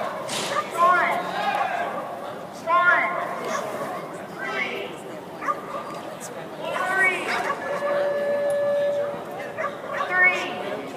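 A dog barking and yipping in short excited bursts, a cluster every couple of seconds, while running an agility course. A steady held tone sounds for about a second near the end.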